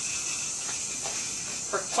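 Steady hiss of water being fed into a hot-water heating boiler through its fill valve while the fill button is held, bringing the system up toward its 12 PSI operating pressure.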